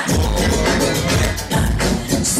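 Loud electronic dance music with a heavy bass beat that kicks in at the start, played over a nightclub sound system.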